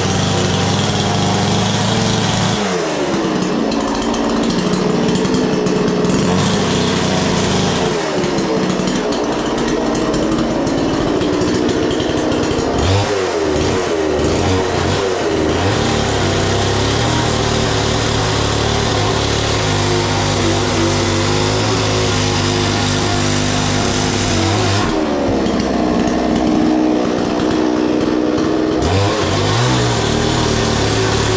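Petrol chainsaw running at high revs while cutting into fired brick. Its pitch sags under load several times and picks up again, with a gritty cutting hiss over the engine.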